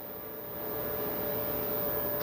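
Steady machine hum with a light hiss, like a fan running, growing slightly louder over the two seconds.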